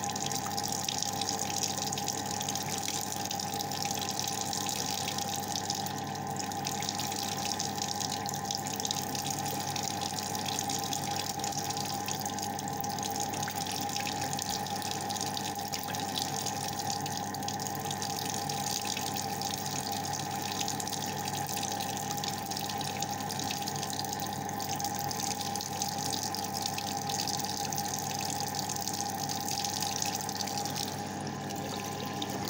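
Hot water tap running steadily into a bathroom sink.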